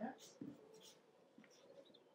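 Near silence: room tone with a few faint short clicks and rustles in the first second.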